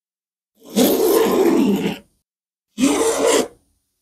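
Pencil scraping along a steel rule across a red cedar soundboard, marking a layout line in two strokes: a longer one of about a second and a half, then a shorter one near the end.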